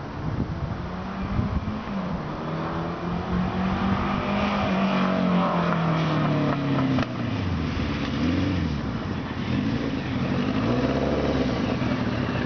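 1976 Kawasaki KZ900's air-cooled inline-four engine as the motorcycle is ridden, its note rising and falling repeatedly as it speeds up and slows, with a sudden drop about seven seconds in.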